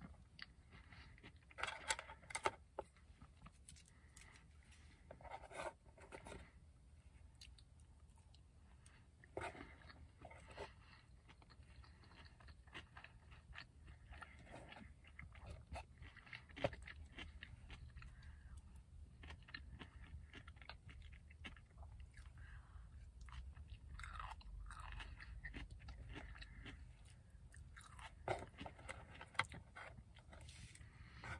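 A person chewing and biting food close to the microphone: soft wet mouth clicks, with louder bursts of chewing every few seconds.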